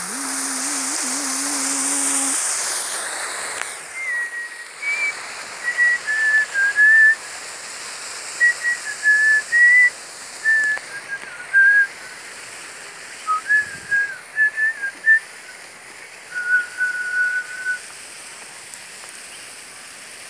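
A man's held sung note ends, then a person whistles a slow tune in short, clear notes that step up and down in pitch, finishing on one longer held note. A steady hiss runs underneath.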